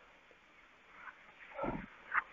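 A pause in a man's talk: about a second of near silence, then faint mouth and breath sounds and a brief low murmur near the end.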